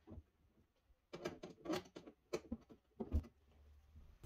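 Faint, irregular clicks and taps of a socket wrench and hands working the bolts on a refrigerator freezer drawer's metal rail, about eight small knocks spread over two seconds.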